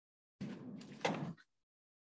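A brief scraping rustle of handled paper, about a second long, with a sharp click near its end: a sheet of notes and a marker being handled.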